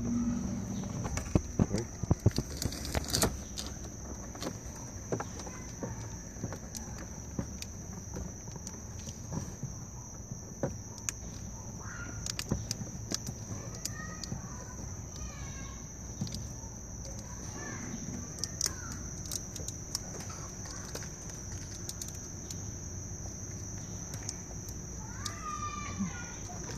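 A steady high insect trill runs on, with scattered clicks and rustles of hands handling wires and tape under a car's dashboard, loudest in the first few seconds. A few short bird chirps come in the second half.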